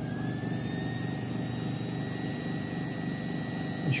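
Steady machinery noise with a high whine that rises in pitch about half a second in and then holds steady, as the laser engraver's newly plugged-in electronics power up.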